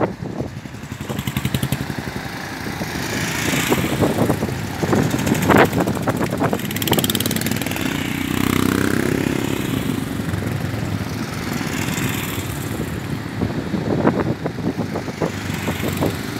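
Several motorcycles riding past one after another, the engine note swelling and fading as each bike goes by, with the loudest pass about eight to nine seconds in.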